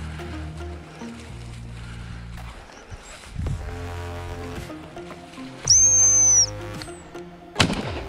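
Background music throughout. About two-thirds of the way in comes one long, loud, high-pitched blast on a gundog whistle, and just before the end a single shotgun shot.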